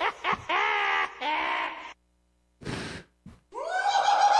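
Horror sound effects played from a soundboard: groaning, gasping voice sounds in the first two seconds, then a brief silence and a short breathy hiss. A long, steady, high cry begins near the end.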